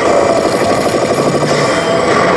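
Biohazard pachislot machine's sound effects: a rapid, continuous rattle like machine-gun fire over the machine's music.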